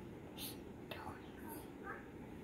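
Faint whispering: a few soft, breathy hushed sounds.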